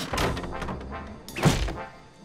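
Cartoon slapstick fall: a single heavy thud of a body landing on a wooden floor about one and a half seconds in, over background music.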